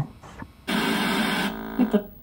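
A burst of harsh television-style static hiss, just under a second long, starting a little over half a second in. It breaks into a short buzzing glitch and a clipped scrap of voice near the end.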